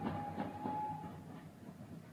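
Faint radio-drama sound effect of a railway train running, a low rumble with soft clatter, fading down. A thin held tone sounds during the first second.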